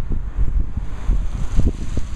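Wind buffeting the camera microphone: a loud, uneven low rumble that rises and falls in gusts.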